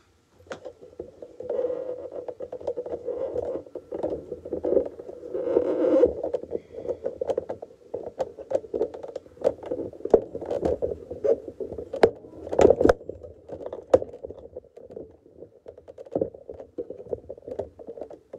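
Irregular knocks, scrapes and rumbling from a phone camera being handled and moved, with no stitching rhythm from the longarm machine.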